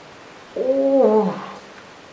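A man's voice: one drawn-out vocal sound of under a second, about half a second in, held level and then falling in pitch.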